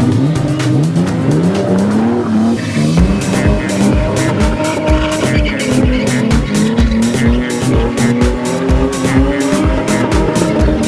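Car engines in a spinning display revving up and down, with tyres squealing as a Ford Cortina and a BMW E30 spin together. Music with a steady drum beat comes in about three seconds in and plays over them.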